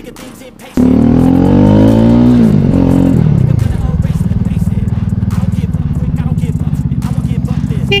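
Kawasaki Bajaj Dominar 400 single-cylinder engine pulling away. It comes in suddenly about a second in, and the revs rise through the first gear. The pitch drops at a shift near three seconds, then the engine settles into a steady, evenly beating cruise.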